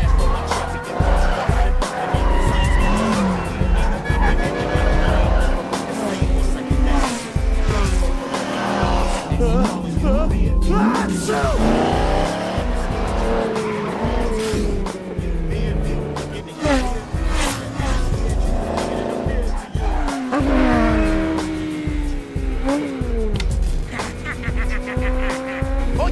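Car engines revving and tires squealing and skidding as small tuner cars swerve around a truck, over bass-heavy music with a steady beat.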